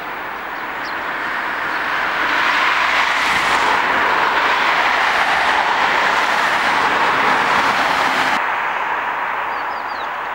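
Road traffic passing close by: a steady rush of tyre and engine noise that swells over the first couple of seconds, holds, then drops off suddenly a little after eight seconds.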